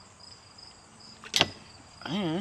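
Insects chirping in short high pulses about twice a second, with one sharp knock about one and a half seconds in.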